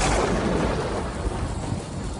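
Thunderstorm: a low rolling rumble of thunder over steady rain, loudest at the start and easing a little toward the end.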